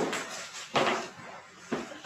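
A few soft knocks and rustles from a framed artwork being lifted off the wall and handled.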